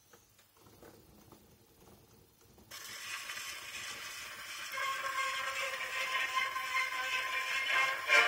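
Portable wind-up gramophone playing a heavily worn 78 rpm shellac disc. A few faint clicks come as the soundbox is set down. About three seconds in, the needle meets the groove and a loud, steady hiss and crackle of surface noise starts suddenly. From about five seconds in, the record's music comes through faintly under the surface noise, muddied by the wear of the disc.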